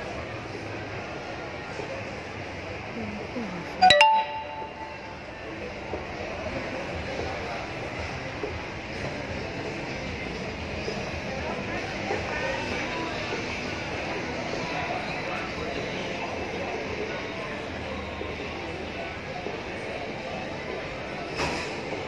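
Shopping-mall background: a steady din of distant voices and activity, with one loud, short, ringing clink about four seconds in.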